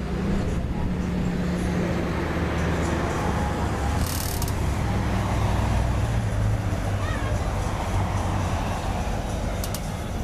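A car driving past on a residential street: a low engine and tyre rumble that builds toward the middle and then eases off.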